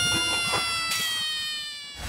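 A long, high, pitched tone, laid in as a sound effect, sliding slowly downward and fading away.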